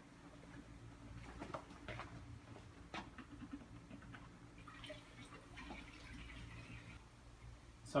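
Faint handling clicks and a soft trickle of coolant poured from a jug into a radiator hose, over a steady low hum.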